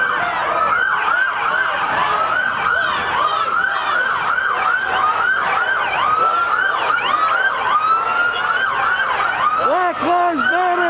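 Several police sirens sounding at once in quick yelp cycles, their rising and falling wails overlapping. Near the end a lower, slower siren tone joins in.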